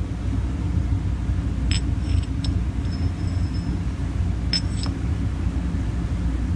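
Steady low background rumble, with a few light metallic clicks and clinks of steel tooling: a hardened punch being slid into and taken out of a steel die block. There are small clusters of clicks about two seconds in and again near the five-second mark, each with a brief high metallic ring.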